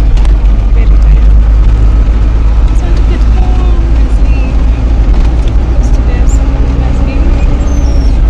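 Steady low engine and road rumble heard from inside a vehicle's cabin, with indistinct voices in the background.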